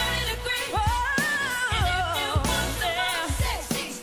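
Female pop singer performing a fast melismatic vocal run live, the pitch rippling up and down, over band music with drum beats; the sound dips briefly near the end.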